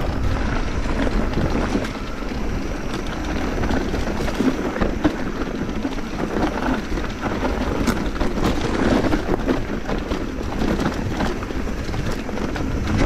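Mountain bike riding down a dirt singletrack: tyres rolling over dirt and leaves, with frequent rattles and knocks from the bike over the rough ground, and wind on the microphone.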